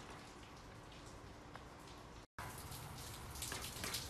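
A faint steady hiss, then after a brief cut, steady rain falling on a wet patio.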